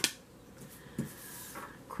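A tarot card being drawn from the deck and laid on a wooden tabletop: a sharp click at the start, a soft tap about a second in, and faint card rustling.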